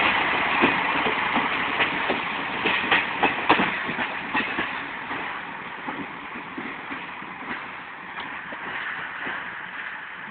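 The PNR Kogane passenger train rolling past close by, its wheels clacking over the rail joints for the first four seconds or so. The sound then fades steadily as the train draws away.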